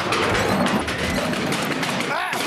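Loud, dense clatter of many knocks and thumps from wooden school desks and chairs as a class scrambles about, with music underneath.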